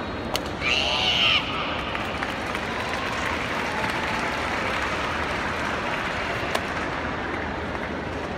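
A karateka's sharp kiai shout lasting under a second, about half a second in, just after a crisp snap; a steady murmur from a large arena crowd fills the rest, with one more short snap near the end.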